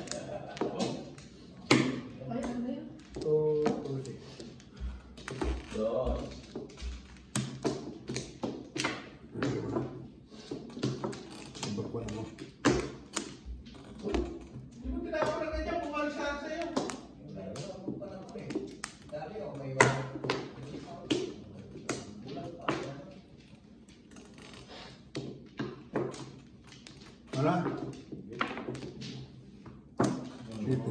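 Mahjong tiles clicking and clacking as they are drawn, set down and knocked against one another on the table: many sharp, irregular clicks.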